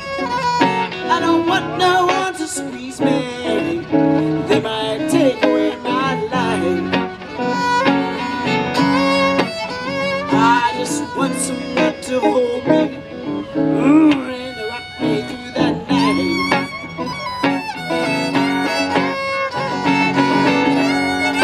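An amplified violin plays an instrumental solo with sliding, wavering notes over guitar accompaniment, with no singing.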